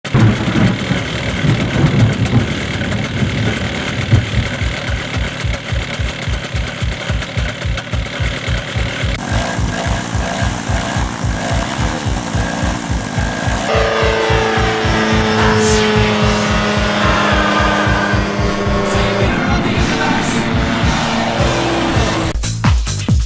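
Fast electronic dance music with a steady beat, a synth melody coming in about two-thirds of the way through. Engine noise is mixed under the opening seconds.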